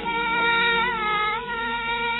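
A woman singing a high, held note that wavers and bends, then moving to a second note, in a 1940s Hindi film song recording.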